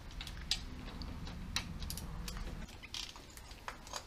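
Scattered light clicks and ticks of a socket ratchet and metal tools working the 10 mm bolts on an engine's valve cover, irregularly spaced.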